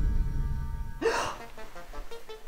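Low, dark horror-film music fading out, then a woman's single sharp gasp about a second in, as someone coming to with a start. Faint soft music notes follow.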